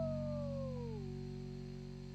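Closing music fading out: a held note slides down in pitch over about the first second, then holds steady over a low sustained chord as the whole thing dies away.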